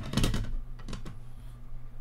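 Hard plastic graded-card slabs clicking and clacking against one another as they are handled and sorted, with a few sharp clicks in the first second.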